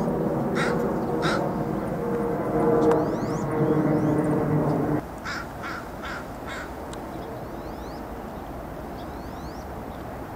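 A bird calling: two short calls about half a second apart early on, then a series of four calls around the sixth second. Under them runs a steady low hum with several pitches, which drops away suddenly halfway through.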